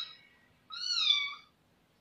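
A cat meowing: the end of one meow at the very start, then a second high meow about 0.7 s in that rises and falls in pitch and lasts under a second.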